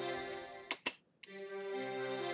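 Playback of a sustained, layered keyboard chord from a song sketch, with a tape delay effect just put on it. Two sharp clicks come a little under a second in; the chord cuts out briefly and starts again.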